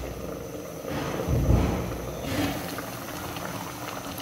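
Paksiw na galunggong (scad in vinegar broth) bubbling at a boil in a pan: a steady crackling simmer, with a louder low swell about a second and a half in.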